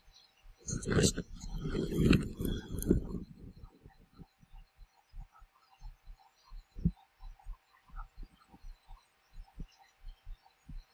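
Handling noise near the microphone as a wristwatch is turned over in the fingers: a loud stretch of rubbing and knocks in the first few seconds, then soft, irregular low thumps about two or three a second. A faint steady whirring hum runs underneath.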